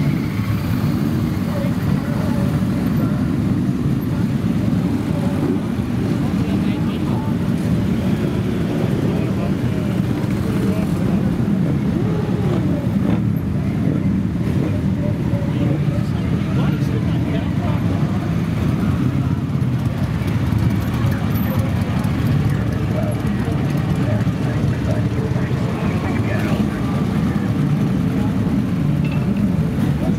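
A column of motorcycles rolling slowly past at low revs, their many engines blending into one continuous rumble. Now and then a single bike's engine rises and falls in pitch as it is throttled up.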